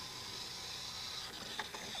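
Clockwork spring motor of a wind-up toy car whirring faintly and steadily as it unwinds and spins a small fan, weakening a little past halfway.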